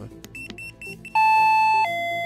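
Proxima DR30 battery-powered radio doorbell, triggered by the bell button of a Sensor Code Pilot keypad, chiming a two-note ding-dong: a loud high tone about a second in, then a lower tone held on. A few short high beeps come just before the chime.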